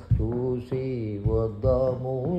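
An elderly man singing a Telugu devotional song in a slow, chant-like style into a handheld karaoke microphone. He holds long, wavering notes in two phrases, with a short break about three quarters of a second in.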